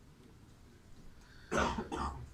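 A person coughing: two short coughs close together near the end.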